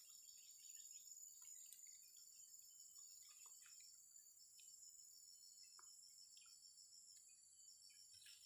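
Near silence with a faint, steady high-pitched insect chorus, crickets or similar, trilling throughout, and a few faint scattered ticks.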